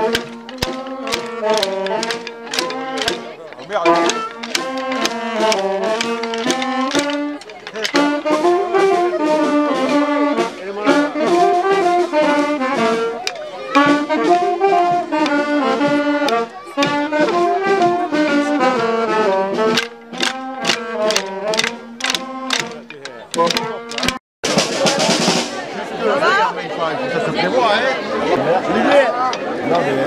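A small street band of saxophone, clarinet and drum playing a lively dance tune to a steady beat. Around 24 seconds in the music breaks off abruptly and crowd voices and chatter take over.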